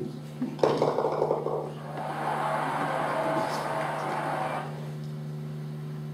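A short rattling clatter about half a second in, then a softer even rushing noise for a couple of seconds, over a steady low electrical hum.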